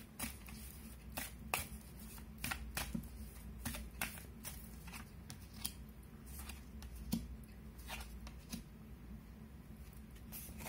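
A deck of tarot cards being shuffled and handled: irregular light card slaps and rustles, one or two a second.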